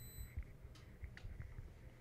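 Faint pause between speech: soft low thumps and a couple of light clicks of handheld microphone handling, with a faint high whine that stops shortly after the start.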